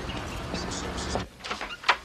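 Footsteps on a paved path over a steady low traffic rumble. About a second in, the background drops away and a hand-pump plastic spray bottle squirts a few short times.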